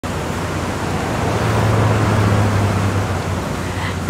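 A loud, steady rushing noise with a low hum underneath, starting abruptly and holding even throughout.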